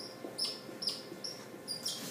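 Dry-erase marker squeaking on a whiteboard while writing: a run of short, high squeaks, about two or three a second.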